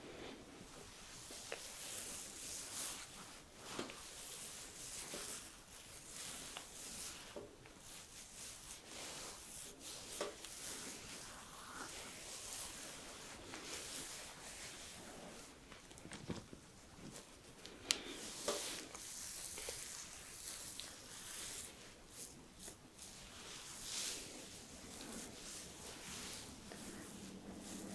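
Warm terry-cloth facial mitts wiping over a bearded face to wash off cleanser: faint, scratchy rubbing of towelling against beard and skin that swells and fades with each slow stroke, with a few light taps.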